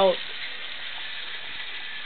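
Chicken tenders deep-frying in hot grease: a steady sizzle of the oil.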